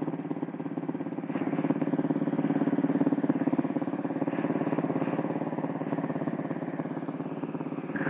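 Honda CB400SS motorcycle's single-cylinder engine idling steadily while the bike stands still.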